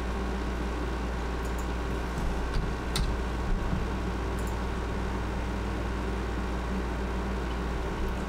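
Steady low hum with a hiss of background noise, with a few faint clicks of keyboard keys and a mouse button about three and four seconds in.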